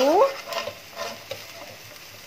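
A chopped-tomato and spice mixture sizzling in a metal wok while a metal slotted spatula stirs through it, with a few faint scrapes against the pan.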